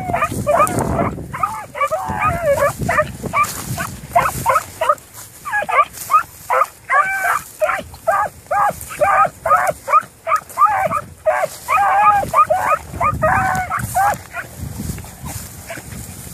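Beagle hounds baying while trailing scent through brush, a quick string of short bays at about two a second that stops near the end. Wind rumbles on the microphone at the start and end.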